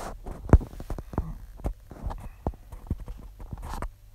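Irregular light taps and clicks, about eight of them unevenly spaced, the loudest about half a second in, from fingertips tapping and handling a smartphone's touchscreen.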